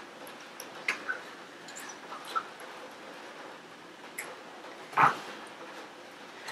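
Quiet room with scattered small clicks and a few brief squeaks, and one louder knock about five seconds in.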